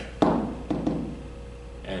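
Taps against an interactive whiteboard's surface: one sharp knock about a quarter second in, then two lighter taps about half a second later.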